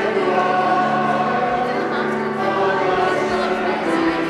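Church choir singing with piano accompaniment, voices holding long notes.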